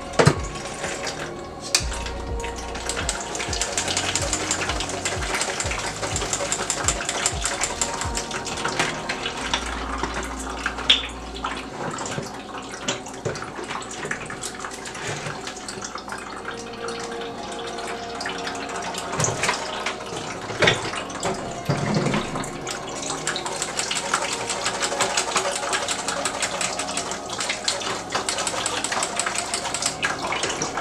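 Blended june plum and ginger juice pouring and trickling through a metal mesh strainer into a plastic jug, with a spoon stirring the pulp in the strainer and clicking against the metal. A few louder knocks come through.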